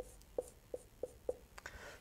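Felt-tip marker hatching short lines across a whiteboard: a regular run of brief strokes, about three a second, with a couple of small clicks near the end.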